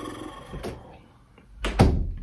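A door closing: a light click about half a second in, then a single heavy thump near the end.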